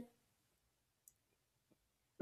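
Near silence, with a couple of faint clicks about a second in and near the end.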